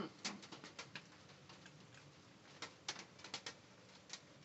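Faint, scattered crunching clicks of a raccoon chewing dry cat food, a cluster in the first second and another near the end.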